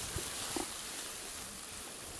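Outdoor meadow background: a steady, even hiss with no distinct event standing out.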